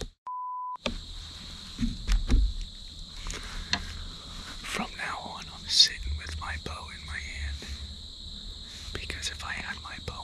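A censor bleep: one steady mid-pitched beep of about half a second, set in a short gap of dead silence about a quarter second in, cutting out a spoken word. Whispered talk follows over a steady high insect chirring.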